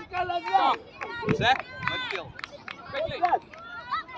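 Several voices shouting and calling out, the words unclear; some of the voices are high like children's.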